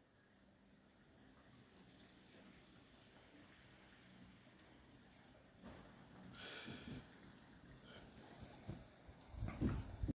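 Near silence, then faint scuffling and rustling from a deerhound digging and nosing in loose garden soil and leaves, starting a little over halfway in, with a few faint knocks that grow louder near the end.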